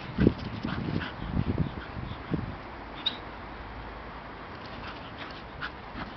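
A bull terrier and a pit bull play-fighting, with low growls in short bursts over the first two or three seconds, then quieter.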